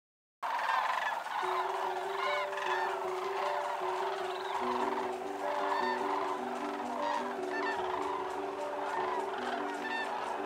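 A flock of sandhill cranes calling, many rolling calls overlapping. It starts suddenly just after the beginning, with sustained background music notes underneath from about a second and a half in.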